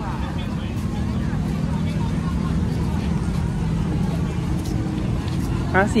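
Busy outdoor market ambience: a steady low rumble under faint chatter from the crowd. A voice comes in near the end.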